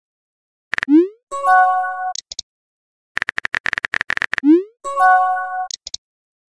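Text-messaging sound effects, twice: a run of quick keyboard-tap clicks, then a short rising pop and a brief bright chime as each new message appears. The second run of clicks is longer.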